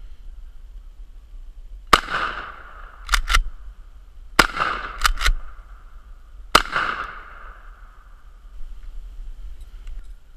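Three shots from a Mossberg 500 .410 pump-action shotgun firing quarter-ounce slugs, each with a ringing echo afterwards. Between the shots the pump is racked twice, a quick two-stroke clack back and forward about a second after each of the first two shots.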